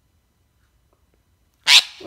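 Blue Indian ringneck parakeet giving one short, harsh, loud squawk near the end, after a near-silent stretch.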